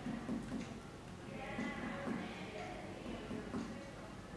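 Abdominal percussion by hand: a series of soft, low taps, often in quick pairs, as a finger strikes the middle finger pressed flat on the skin of the upper abdomen. This is done while tracing the lower border of the liver's left lobe.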